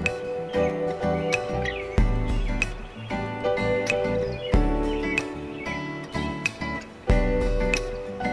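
Electronic keyboard chords played over a looping backing track, with a deep bass note landing about every two and a half seconds; the player is working a diminished chord into the progression.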